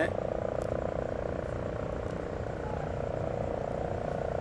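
Frogs calling at night: a steady, rapidly pulsing low trill that runs on without a break.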